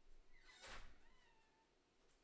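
A dog barking once, faintly, about half a second in.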